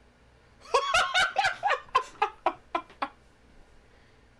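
A man laughing: a quick run of about a dozen short laugh pulses, starting just under a second in and dying away about three seconds in.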